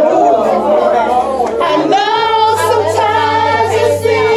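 Voices singing along with music, with a long held, wavering note in the second half.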